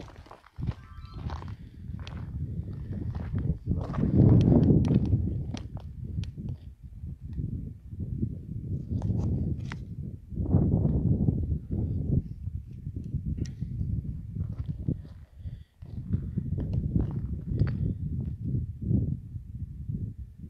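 Footsteps crunching on loose gravel and stones while walking, with a heavy low rumble of noise on the microphone swelling and fading.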